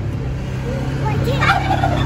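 Farmyard fowl calling: a run of short, wavering calls starting about half a second in and loudest around a second and a half, over a steady low hum.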